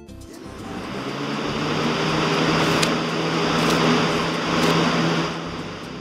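Vacuum cleaner running: a steady noise with a low hum that builds up over the first two seconds and fades away near the end.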